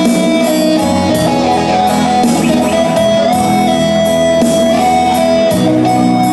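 Live music played on an electronic keyboard: a melody of held notes over a steady beat.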